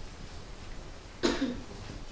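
A single short, sudden cough a little past halfway, with a faint follow-on, over quiet room hum.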